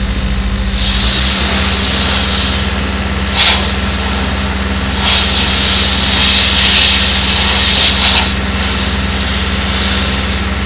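Compressed-air blow gun hissing in bursts as chaff and debris are blown off a combine: a long blast about a second in, a brief sharp one at about three and a half seconds, and a longer one from about five to eight seconds. A steady low engine drone runs underneath.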